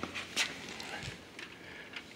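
A few faint footsteps and handling knocks on a concrete floor, over quiet room tone.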